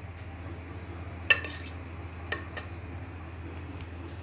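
A metal fork clinking against an earthenware cooking pot as vegetables are spread in it: one sharp clink about a second in, then two lighter ones.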